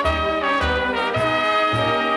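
An instrumental anthem played by brass and orchestra, with trumpets and trombones carrying the tune over low notes on a steady beat about twice a second.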